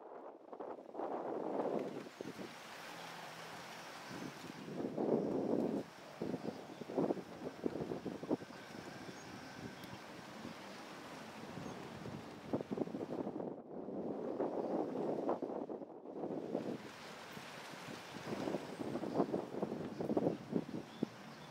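Wind buffeting the microphone in irregular gusts, rising and falling every few seconds with crackling.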